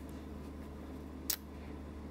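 Quiet room tone with a steady low hum, broken once a little over a second in by a brief soft rustle as a straight pin is worked into the fabric.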